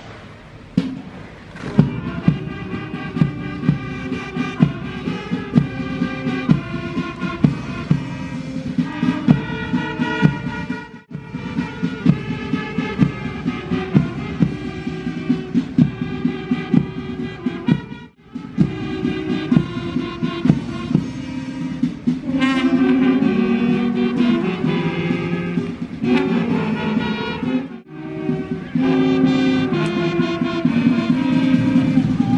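Brass band playing march music with a steady drum beat. The sound drops out briefly three times.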